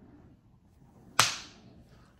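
A single sharp crack about a second in, with a short hissing tail that fades over about half a second, over a quiet room.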